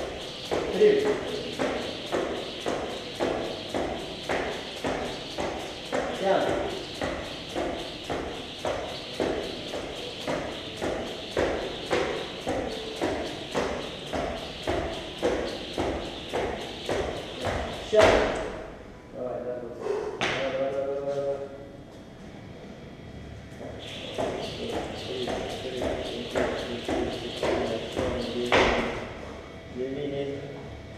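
Jump rope skipping on a rubber gym floor: rope slaps and foot landings about twice a second. A little past halfway the rhythm breaks off with a loud slap, followed by a pause with a brief vocal sound, then skipping resumes for a few seconds and ends with another loud slap near the end.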